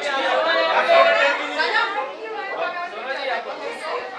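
Several voices talking over one another, a busy chatter with no one voice standing out.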